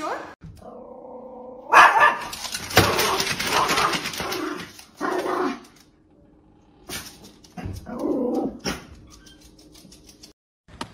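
Dogs vocalizing: a held, pitched call, then a loud stretch of rough calls and barks, then a few short barks near the end.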